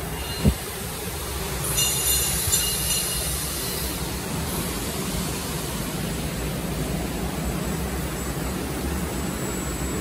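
LPG-fired burner under a 1000-litre gas pressure cooking kettle running with a steady low rumble. A single knock comes just after the start, and a brief high hiss about two seconds in.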